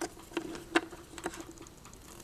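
Light plastic clicks and taps from fingers working a Littlest Pet Shop toucan figure into its small plastic basket, about five irregular knocks over two seconds.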